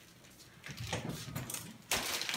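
A side-by-side refrigerator door being pulled open, with rustling handling noise and a sharp knock near the end.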